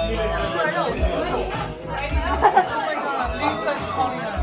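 Several people chattering over each other, with music playing underneath.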